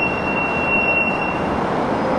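Steady outdoor rumbling noise with a single high, steady squealing tone that stops about one and a half seconds in.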